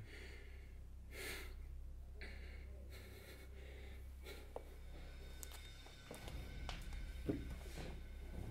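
A person's faint breaths and gasps, a few soft puffs in the first three seconds, followed by scattered light clicks and shuffles over a steady low hum.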